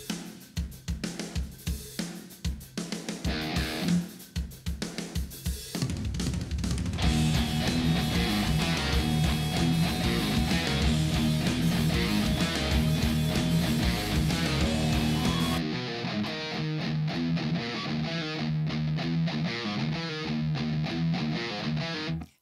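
Electric guitar tuned down to D-sharp playing a chugging open-string rock riff along with a drum kit. The first six seconds are sparse chugs and drum hits, then the full, dense riff with drums comes in and keeps going.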